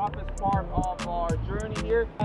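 A man speaking over background music with a steady beat.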